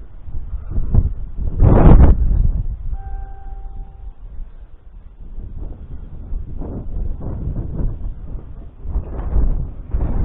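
Wind buffeting the camera microphone in uneven gusts, strongest about two seconds in. About three seconds in, a brief steady pitched tone sounds for about a second.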